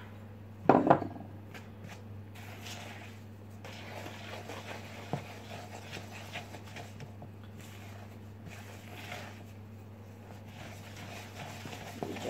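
A spatula scraping and stirring flour into creamed cake batter in a plastic mixing bowl: soft, irregular scratchy mixing sounds. There is one short louder sound about a second in, and a steady low hum underneath.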